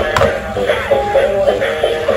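A dancing robot toy playing a song, with singing over a beat.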